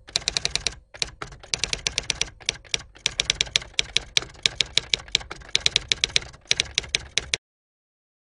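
Rapid typewriter keystrokes clacking in quick runs of several strikes a second, with brief pauses, cutting off abruptly about seven seconds in.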